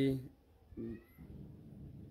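A short animal cry about a second in, brief and fairly faint, with a thin high note rising in pitch.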